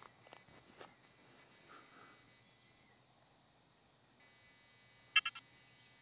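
Quiet outdoor background in a rural field, with a short run of three or four quick high chirps about five seconds in.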